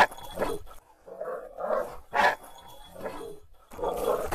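Dogs and a wolf at play, giving short growls and barks in several irregular bursts, the loudest about two seconds in.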